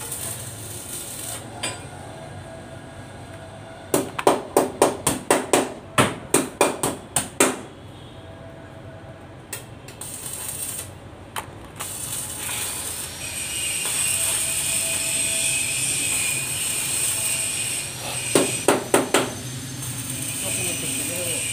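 Arc welding on a steel bus body panel: the arc's steady frying crackle fills the second half. Sharp metal strikes come in a rapid run of about a dozen, roughly four a second, starting about four seconds in, and a short run of a few more near the end.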